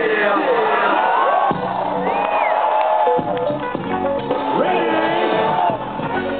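Live hip-hop played loud over a festival PA, with a rapping voice over the beat, heard from inside the crowd.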